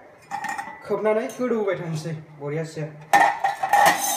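Steel cookware clanking, metal on metal with a ringing clink, starting about three seconds in after a voice.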